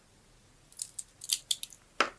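Steel link watch bracelet clinking as the wristwatch is handled: about six short, sharp metallic clicks over a second.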